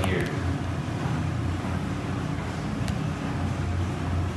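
Steady low room hum, typical of a building's air-conditioning or ventilation, with a couple of faint clicks about three seconds in.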